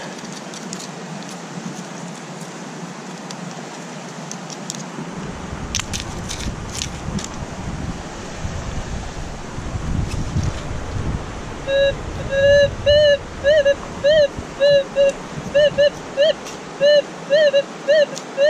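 Gold-prospecting metal detector giving a target signal: from about twelve seconds in, a run of short beeps on one pitch, each bending slightly upward, about two to three a second, over steady river noise. Before the beeps there is a low rumble and a few clicks.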